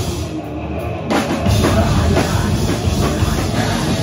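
Live hardcore band playing loud, with distorted guitars, bass and a drum kit with cymbals. The sound thins out briefly near the start, then the full band crashes back in about a second in.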